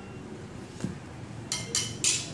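Steel knife blades being handled against each other: a soft knock a little under a second in, then two sharp ringing metallic clinks in the last half-second.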